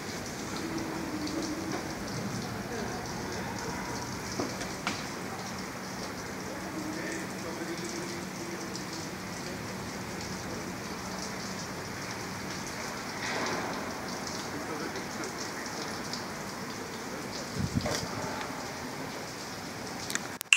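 A steady hiss of outdoor background noise, with faint distant voices and a brief louder knock near the end.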